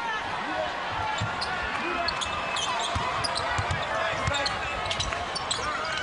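A basketball being dribbled on a hardwood arena court, with steady low thumps about every half second or so, over the murmur of a large arena crowd. Short high sneaker squeaks come and go.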